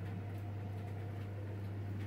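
Room tone: a steady low hum under a faint even hiss, with no distinct sounds.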